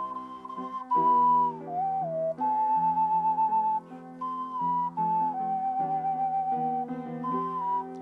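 Ocarina playing a slow melody of clear held notes that mostly step downward in short phrases. A lower instrument holds chords underneath.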